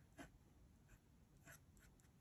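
Faint scratching of a metal dip-pen nib on kraft paper, a few short strokes as black ink is filled in.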